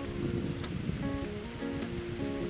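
Acoustic guitar played alone in a pause between sung lines, notes changing every half second or so, over a steady rushing background noise.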